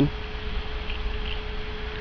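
Steady low rumble with a faint, steady hum at one pitch above it; no distinct clicks or other events.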